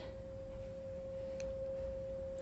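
A single steady pure tone, held at one pitch without change, with a faint tick about one and a half seconds in.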